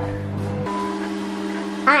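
Microwave oven running with a steady electrical hum, its tones shifting about two-thirds of a second in, just after it has been started.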